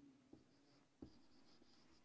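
Felt-tip marker writing on a whiteboard, faint: light squeaks of the tip as the letters are drawn, with a couple of soft taps.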